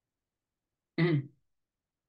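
A man clears his throat once, a short voiced sound about a second in.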